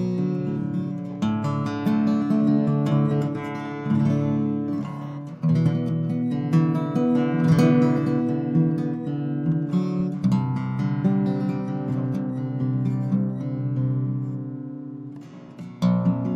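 Taylor six-string baritone guitar played solo, plucked notes and chords ringing out. There is a brief break about five seconds in, and a chord dies away near the end before the next one is struck.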